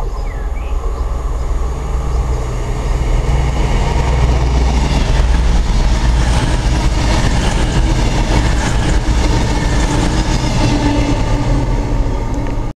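Passenger train passing close at speed: a heavy rumble and rush of wheels on rail that builds over the first few seconds and stays loud as the carriages go by.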